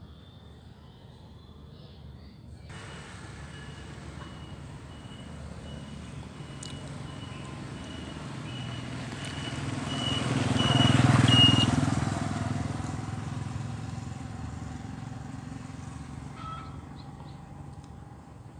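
A motor vehicle passing by, its engine growing louder to a peak about eleven seconds in and then fading away.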